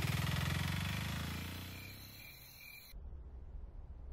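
A vehicle engine running with a steady pulsing beat, fading out over the first two seconds or so. About three seconds in it cuts abruptly to a quiet room hum.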